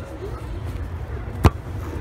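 A soccer ball kicked once: a single sharp thump about one and a half seconds in, over a low steady rumble.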